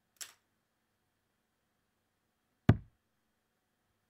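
Steel-tip darts striking the dartboard: a faint, sharp click just after the start, then a much louder, deep thud of a dart landing about two and a half seconds later.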